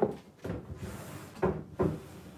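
Kitchen cupboard door being opened and shut while bottles are taken out, with two short knocks about one and a half seconds in.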